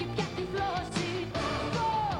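A woman singing a Greek pop song, backed by a band, her sung melody gliding and bending in pitch over a steady beat.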